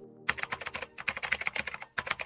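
Computer keyboard typing sound effect: a fast, even run of keystrokes, about ten a second, starting a moment in.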